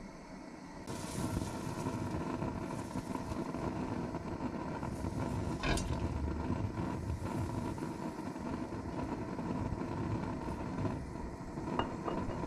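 A steady rushing noise from the stove switches on about a second in and keeps going. There is a light clink near the middle as cooking oil is poured into the empty metal pan.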